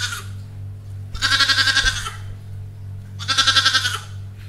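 An animal calls three times, each call under a second long with a quavering pitch, over a steady low hum.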